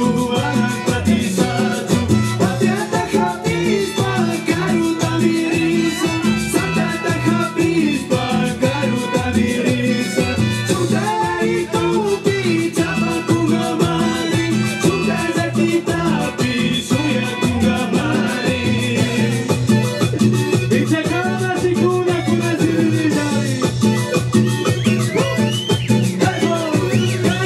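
Live band playing Latin dance music in a salsa style, loud and continuous with a steady beat.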